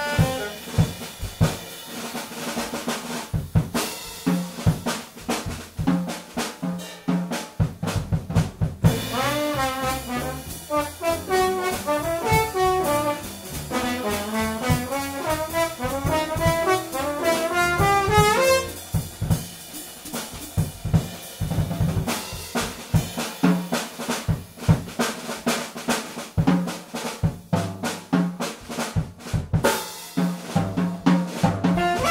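Live jazz: a drum kit playing a solo passage for the first nine seconds or so, then a trombone phrase with sliding notes for about nine seconds, then the drums alone again to the end.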